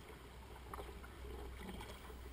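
Faint water sounds of a kayak being paddled on calm water, with a few light clicks and drips from the paddle.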